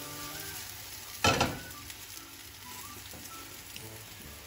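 Pancake batter frying in oil in a frying pan, a steady light sizzle, with a single knock about a second in.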